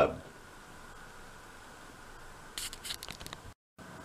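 Quiet room hiss, then a brief run of crinkly rustling and small clicks about two and a half seconds in, cut off abruptly by a moment of dead silence.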